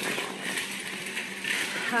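Mobility scooter moving along a sidewalk: a steady rolling hiss with faint, irregular rattles.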